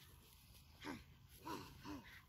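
A pug making three short, faint vocal sounds, each rising and falling in pitch, starting about a second in.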